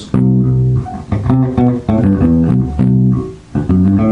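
Electric bass guitar playing a short improvised line of about a dozen single notes drawn from a scale, some held and some quick, in rhythm. There is a brief break about three and a half seconds in.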